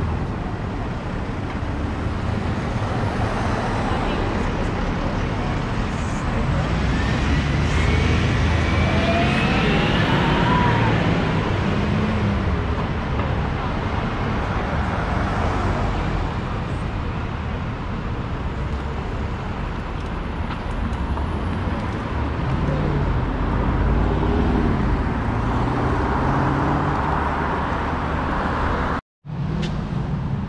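Steady road traffic at a city junction: cars running past with a constant rumble, a rising whine from about seven to eleven seconds in, and people's voices passing near the end.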